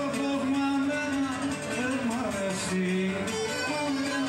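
Cretan lyra and laouto playing a syrtos dance tune live. The laouto strums the rhythm under a sustained melody line that slides between notes.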